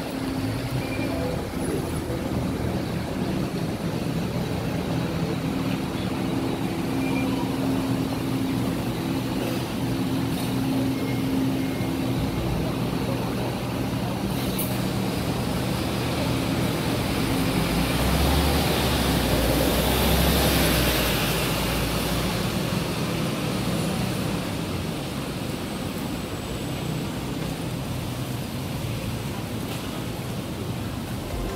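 MAN A22 single-deck diesel bus running at an interchange, with a steady low engine hum. The bus engine then swells into a louder low rumble as the bus drives off, loudest about 18 to 22 seconds in, and then fades.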